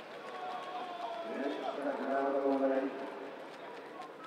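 A man's voice speaking indistinctly over open-air ambience, loudest about two seconds in.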